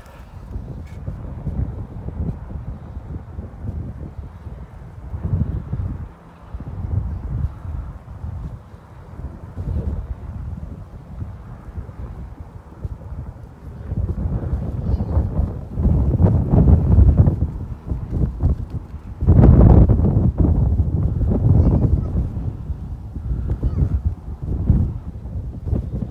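Wind buffeting the microphone in gusts, a rumbling noise that grows heavier in the second half, with the strongest gust a little past the middle.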